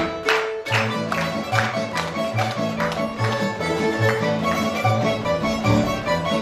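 Tamburica band with double bass playing a lively folk dance tune: plucked melody over a regular bass pulse. Sharp regular beats are heard in the first second or so, then stop.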